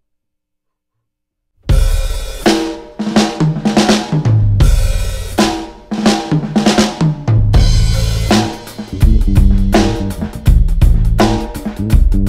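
After under two seconds of silence, a live band comes in together: a drum kit with snare, kick and crash cymbal hits and a bass guitar playing low notes. It opens with separate ringing accents, then settles into a steady beat from about eight seconds in.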